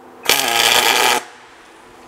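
MIG welding gun laying a single tack weld on steel plate: the arc runs loud for about a second, starting a quarter second in, then cuts off.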